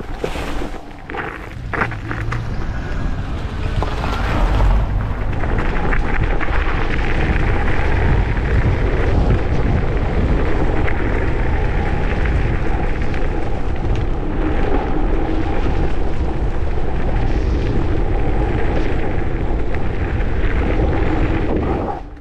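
Heavy wind buffeting on the microphone over the rumble of an electric scooter's over-inflated tyres on a frozen gravel path. The sound gets louder about four seconds in and then holds steady.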